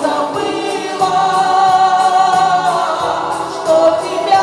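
A woman singing into a microphone over an instrumental accompaniment with a steady beat and bass line, played through PA loudspeakers. She holds one long note through the middle.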